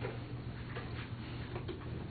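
Papers being handled at a lectern: a few faint, irregular clicks and rustles over a steady low room hum.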